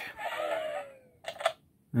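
Dino Fury Morpher toy playing its electronic power-down sound effect: falling tones for about a second, then a short blip.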